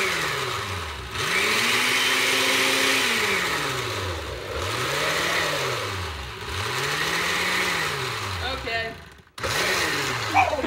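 Oster countertop blender on its liquefy setting, its motor switched on and off in pulses: it spins up, runs for a second or two, then winds down in pitch, about four times over, with a short full stop near the end before it starts again.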